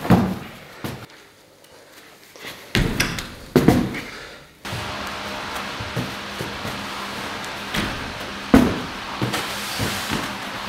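Heavy thuds of a person landing jumps and flips on a gym floor, several in the first four seconds. After an abrupt change in the background, lighter thumps of hands and feet hitting the floor during fast floor exercises.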